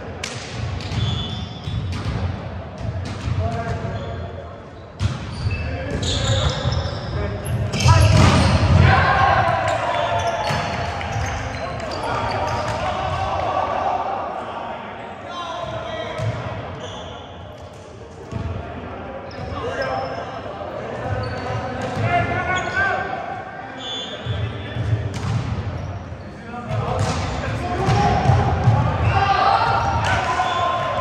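Indoor volleyball play in a large, echoing gym: the ball is struck and bounces on the wooden floor, amid players' shouts and calls. The loudest moment comes about eight seconds in.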